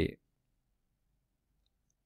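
The end of a short spoken phrase, then near silence: room tone.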